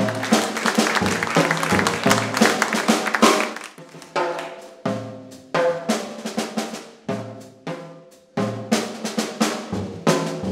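Jazz drum kit played with sticks, busy snare rolls and cymbal strikes, between short accented notes from the band over the upright bass that ring and fade.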